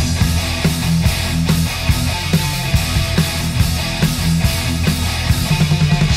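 Heavy/stoner metal band playing: distorted electric guitar and bass chords over drums with a steady, regular beat.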